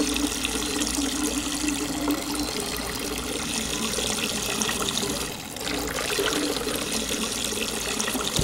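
A man urinating: one long, unbroken stream of urine splashing into liquid, dipping briefly about five seconds in.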